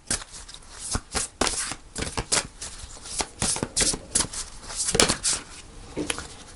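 A deck of tarot cards shuffled overhand by hand: a quick, irregular run of soft card slaps and flicks, several a second, with one louder slap about five seconds in.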